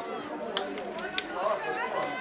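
Many overlapping voices of a group chattering, with two short sharp sounds about half a second and a second in.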